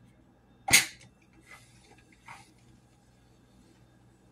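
Liquid hand soap pump dispenser spurting soap, one loud short squirt less than a second in, followed by two fainter spurts.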